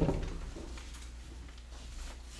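A knock fading out at the start, then quiet room sound with a low steady hum and a few faint clicks.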